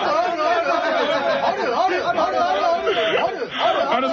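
Many voices chanting "aru aru" over and over at once, piling up into a dense, overlapping chorus.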